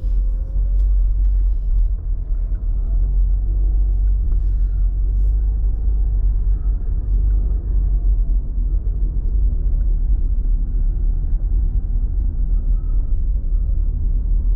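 Steady low rumble of a moving vehicle heard from inside its cabin: engine and road noise, with a faint whine that drifts slightly in pitch.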